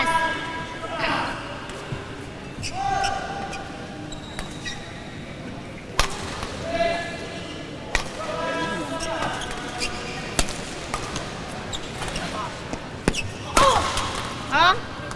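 Badminton rally in a sports hall: racket strikes on the shuttlecock come a couple of seconds apart, the sharpest about six and eight seconds in. Voices and hall noise run underneath.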